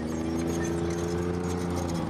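Tracked armoured personnel carrier's engine running steadily as it moves under load onto a road.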